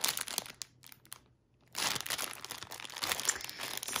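A clear plastic bag full of small packets of diamond-painting drills crinkling as it is handled. The crinkling stops for a moment about a second in, then starts again.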